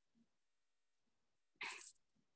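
Near silence on a video-call line, with one brief faint sound, a short breath or rustle-like noise, near the end.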